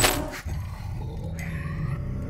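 A sharp digital glitch burst, then a low rumbling creature growl from a horror-series monster, as film sound design.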